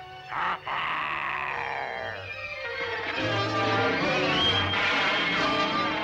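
Animated-cartoon background score. A long descending musical slide runs over the first couple of seconds, then fuller, busy orchestral music takes over from about three seconds in.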